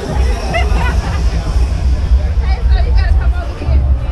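Street crowd hubbub: many people talking at once on a busy sidewalk, with music playing and a heavy low rumble underneath.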